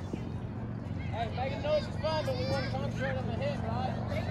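Indistinct chatter of spectators and young players, several voices talking and calling at once, over a steady low hum.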